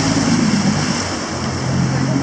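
Boat outboard motor idling steadily, its low hum dropping slightly in pitch partway through, over a steady wash of surf and wind noise.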